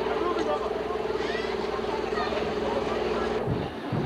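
A steady motor drone with a slightly rippling pitch under scattered people talking, cut off abruptly near the end.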